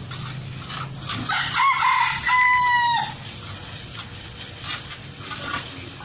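A rooster crowing once, starting about a second in and lasting about two seconds, the pitch rising and then held before breaking off. A steady low hum and faint scraping run underneath.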